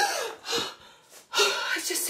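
A person's sharp, voiced gasp with a falling pitch, then speech starting about a second and a half later.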